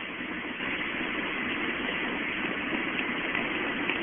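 Steady road and engine noise inside a moving Honda car's cabin.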